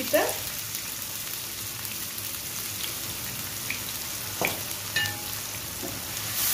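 Chopped garlic sizzling steadily in hot oil with dried red chillies in a frying pan, with two light clicks near the end.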